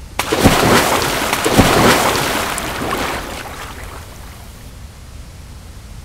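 Splash sound effect of bodies plunging into water from a jump: two heavy splashes about a second apart, then churning water that fades away over a few seconds.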